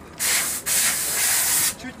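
Loud hissing spray in two bursts that start and cut off sharply: a short one just after the start and a longer one of about a second.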